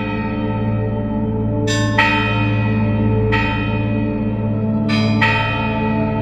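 Church bells (sampled) tolling, several strikes a second or two apart, each left ringing on, over a steady low drone.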